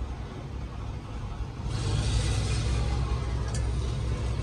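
Steady low background rumble that swells, with a rising hiss, about two seconds in. Near the end there is a light click as a stainless wire strainer is handled.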